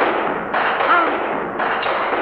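Film sound-effect gunshots: two sharp shots about a second apart, each trailing off in a long echoing decay.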